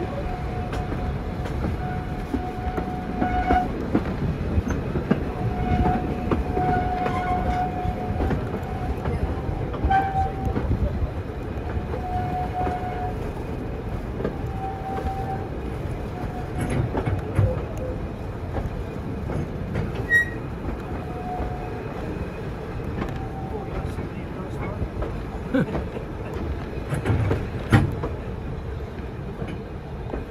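A passenger train's carriages running over the track, heard from aboard: a steady rumble with scattered clicks, and a faint high tone that comes and goes in short stretches through most of the first twenty seconds or so.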